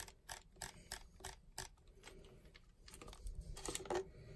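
Nikon DSLR command dial clicking through its detents, a handful of light, spaced clicks in the first second and a half, then a few fainter ones near the end. Each click steps the aperture value that the lens chip reports.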